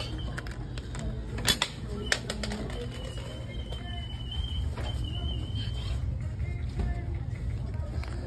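Capsule toy vending machine dispensing: two sharp plastic clacks about a second and a half and two seconds in, as a capsule drops into the chute after the crank is turned, over a steady low hum.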